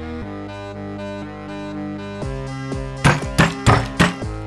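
Cartoon soundtrack music with held low, string-like notes, then four quick percussive sound-effect hits in the last second, one for each big digit popping onto the screen.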